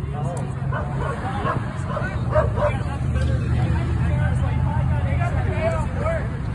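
Indistinct raised voices over the steady low rumble of an idling pickup truck engine.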